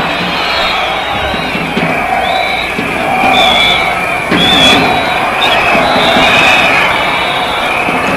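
Football stadium crowd, loud and steady, with many voices chanting and singing together from the stands.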